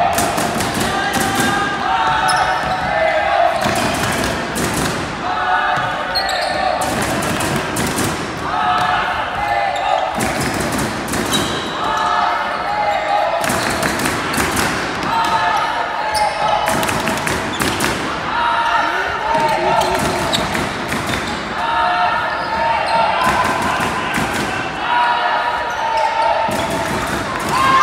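Indoor ultimate frisbee game: players' footfalls and thuds on a wooden sports-hall floor, with players' shouts repeating throughout, all echoing in the large hall.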